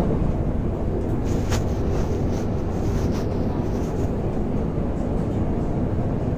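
Steady low rumble of a passenger train running, heard from inside the carriage. A couple of faint, brief clicks come about a second and a half in.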